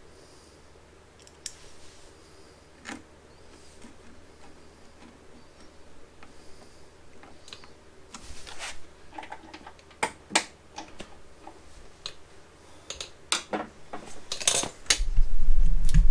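Scattered small metallic clicks and taps of a screwdriver and wire connectors being worked at a scooter's rectifier and battery wiring. A low hum comes in near the end.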